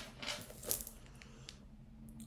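Faint handling noise from a leather card case and quilted bag being picked up: soft rustling at first, a brief scuff, then a few light clicks.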